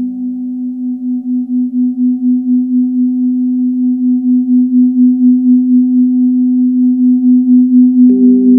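Sonicware Liven XFM FM synthesizer holding a low sustained drone that pulses in a steady wobble about three times a second, slowly growing louder, with faint higher tones held above it.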